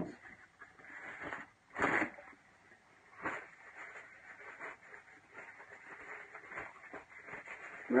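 Paper tissue rustling and crinkling as a fresh sheet is pulled out and handled, with a louder rustle about two seconds in and a smaller one about a second later.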